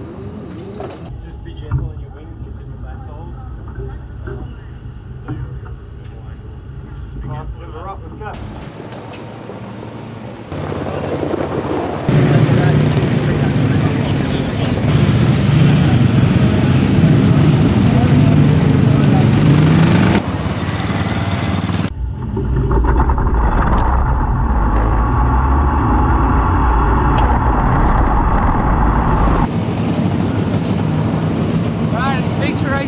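410 sprint car engines running, heard in a series of cut-together shots: quieter for the first several seconds, then loud engine noise from about twelve seconds in as a car moves through the pits, with sudden changes near twenty and twenty-two seconds.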